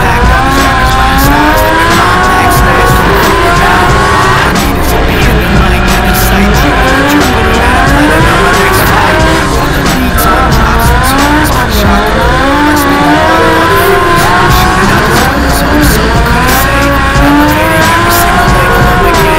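Drift car engine revving up and down over and over as the car slides, with tyres squealing, mixed under a music track.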